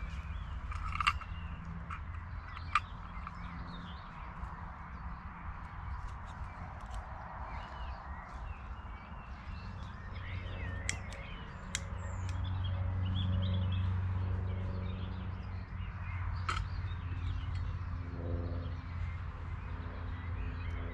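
Birds calling and chirping, with a few sharp clicks and clinks from metal camping cookware being handled, over a low steady rumble that swells about two-thirds of the way through.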